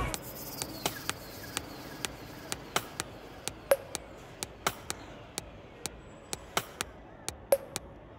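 A run of irregular sharp clicks, two or three a second, over a faint steady hiss.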